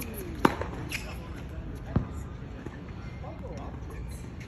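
Tennis ball struck by rackets in a practice rally: two sharp hits about a second and a half apart.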